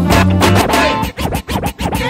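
A DJ mix with turntable scratching. The track plays for about a second, then breaks into quick scratched cuts: a record is pushed back and forth under the needle, with pitch glides and short drop-outs between strokes.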